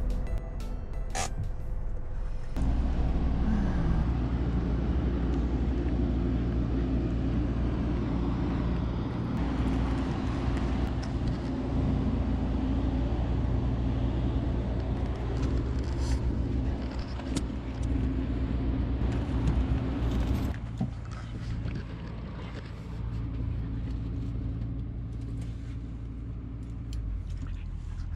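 A motorhome's engine running steadily, a low even hum. It drops in level about twenty seconds in.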